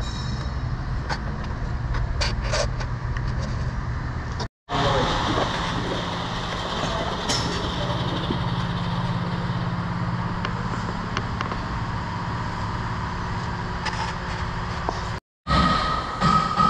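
A steady mechanical hum with scattered light clicks and knocks. It cuts out abruptly twice, for a fraction of a second each time.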